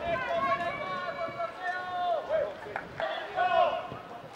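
Footballers shouting in celebration after a goal: several men's voices in long, held yells, one stretching about two seconds, a shorter one near the end.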